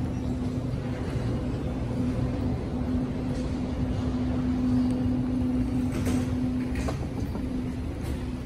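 Steady mechanical hum over a low rumble, with a few light knocks about three-quarters of the way through.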